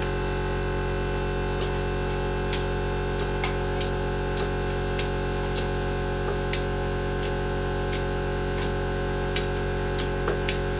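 Ratchet strap being cranked to hoist an engine, its ratchet clicking about every half second, over a steady electrical hum.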